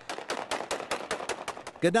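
Automatic gunfire: a rapid, irregular string of sharp shots lasting over a second.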